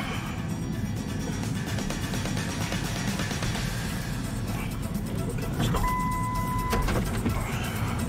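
Background music over a tow truck's engine running as it manoeuvres up to a van to hook it. Past the middle, a single steady high beep lasts about a second.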